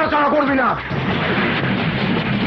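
A man shouts, and about a second in a dense, noisy burst of action-film sound effects begins, like gunfire or a crash, with a music score starting underneath.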